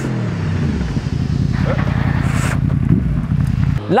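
Suzuki GSX-S1000 inline-four motorcycle engine as the bike approaches through a bend. Its pitch falls in the first second, then it runs on steadily and cuts off abruptly near the end.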